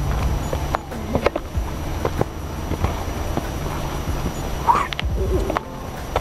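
Footsteps crunching on a soft sandy dirt trail, irregular and uneven, over a low steady rumble on the microphone.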